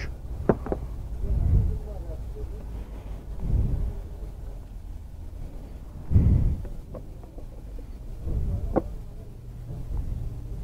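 Low rumbling gusts of wind on the microphone, with a couple of sharp plastic clicks from air filter parts being handled and fitted on a scooter.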